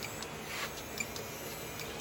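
Electric winch on an RC crawler quietly reeling in its line under load, with a few light clicks.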